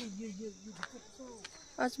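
A steady high-pitched chorus of insects chirring, with a voice over it at the start and near the end.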